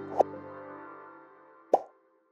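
Soft background music fading out, with two short pop sound effects, one just after the start and one near the end.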